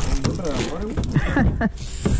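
Speech: a man's voice talking, with a few short knocks.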